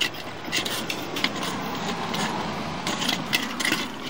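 Scraping with a few short clicks and knocks: a sewer inspection camera and its push cable being worked into a 3-inch cast iron clean-out.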